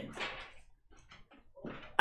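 A pause in a man's talking: his voice trails off in the first half second, then near silence, with a faint short sound just before he speaks again.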